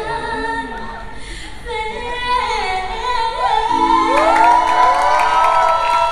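Three women singing live through handheld microphones, several voices in harmony that layer and swell in the second half.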